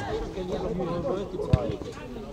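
Quiet background voices talking, with one short dull thump about one and a half seconds in.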